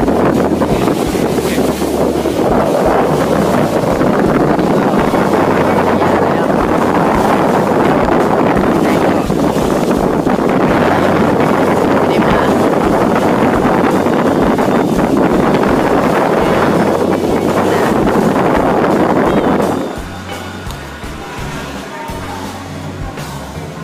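Loud wind buffeting a phone microphone on a moving boat at sea, over a steady rush of boat and water noise. About two seconds before the end the sound cuts to a much quieter scene with music.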